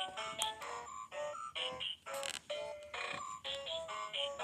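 A child's electronic musical toy book playing its tune as a run of short, choppy electronic notes, about three or four a second with brief gaps between them. It sounds bad, which the owner blames on weak batteries.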